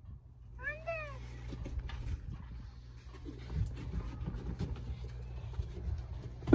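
A brief, high rise-and-fall whine from a Cane Corso about a second in, followed by soft crunching and patting of packed snow over a steady low rumble.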